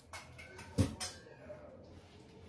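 Kitchen-work knocks: a loud, short thud a little under a second in, then a lighter knock just after, over a quiet room.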